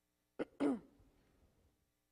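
A person clearing their throat: a short sharp sound, then a louder one that falls in pitch and fades within about a second.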